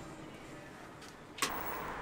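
Faint indoor room tone, then about three-quarters of the way through a sharp click and an abrupt switch to steady outdoor street noise with a low rumble.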